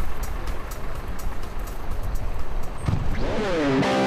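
Coach bus engine idling, a steady low rumble, under background music. About three seconds in, an electric guitar slides up in pitch into a riff.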